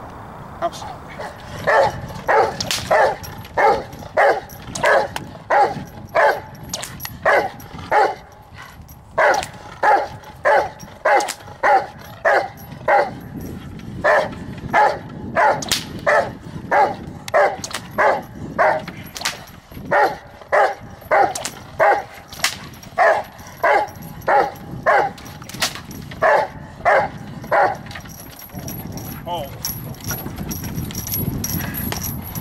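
Dog barking in a steady run, about two barks a second with a few short breaks. It is the tethered dog on the training table barking at the protection helper before taking the sleeve grip.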